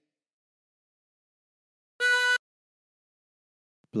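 A single short note drawn on hole eight of a 24-hole tremolo harmonica in C, a B, held for under half a second about two seconds in.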